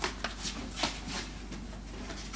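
A few short, scattered knocks and shuffling noises over a steady low hum.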